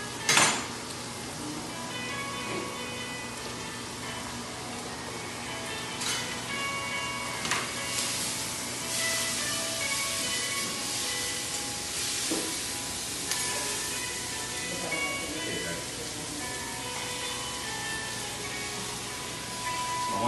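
Chicken and vegetables sizzling over high heat in a wok as they are stirred with a spatula, with a sharp clack right at the start. Quiet background music plays underneath.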